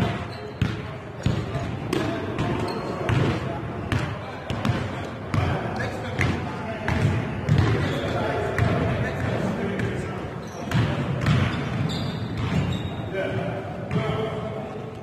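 Basketball game on an indoor court: a basketball bouncing on the floor in irregular thuds, with players' voices calling out.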